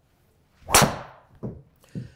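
A Cobra Darkspeed LS driver striking a golf ball off a tee: a brief swish of the swing, then one loud, sharp crack of impact. A softer thud follows about two-thirds of a second later.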